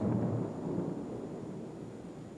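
Thunder rumbling: a low roll that starts suddenly and slowly dies away.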